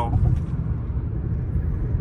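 Steady low road and engine rumble heard from inside the cabin of a Maruti Brezza driving along a highway.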